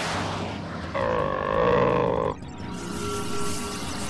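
A cartoon character's strained, wavering groan, about a second long, rising out of a short swish and set over background music.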